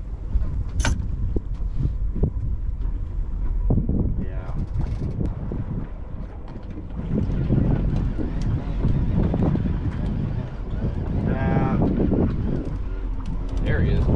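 Wind rumbling on the microphone aboard an open boat at sea, a steady low buffeting, with a sharp click about a second in.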